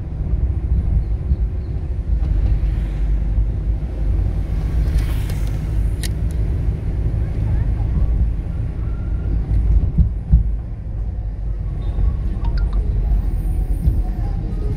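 Car driving slowly in town traffic: a steady low rumble of engine and road noise, with a brief sharp click about six seconds in.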